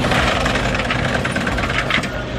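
Lowrider Lincoln Town Car running on three wheels, its engine going under a steady mechanical buzz and clatter.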